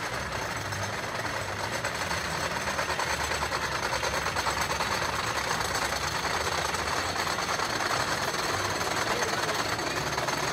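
Wooden roller coaster train being hauled up the lift hill: a steady, rapid mechanical clatter of the lift chain and anti-rollback ratchet.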